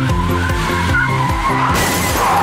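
Upbeat background music with a wavering, skid-like squeal over it, and a rush of noise near the end.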